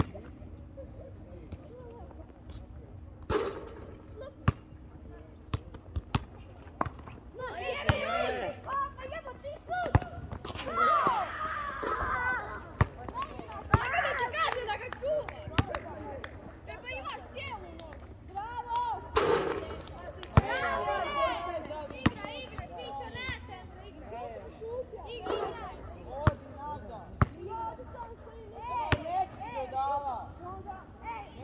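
A basketball bouncing on an outdoor court: repeated short, sharp thuds every second or two, with people's voices in between and two louder bangs, about three seconds in and again near the middle.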